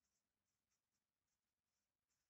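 Near silence, with faint scratches of a pen writing on paper in short strokes.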